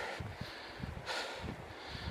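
Faint breathing and soft, irregular footfalls of a hiker walking under a heavy pack.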